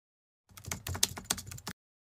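Keyboard typing sound effect: a fast run of clicks that starts about half a second in and stops abruptly just over a second later.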